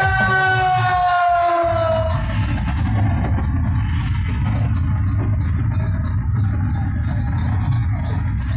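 Street band music: a melody line slides downward over the drums. About two seconds in the melody drops out, leaving the drum section of snare and bass drums playing a dense, heavy beat on its own.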